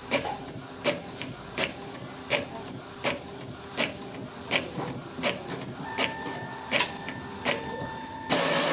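Epson L3210 inkjet printer printing a page: a sharp clack repeats about every three-quarters of a second as the print head runs its passes and the paper feeds forward. A steady whine joins in near the end.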